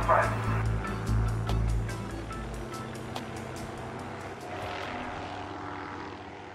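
A low, steady engine drone with background music over it. The deep rumble drops away about two and a half seconds in, leaving the music and a fainter hum.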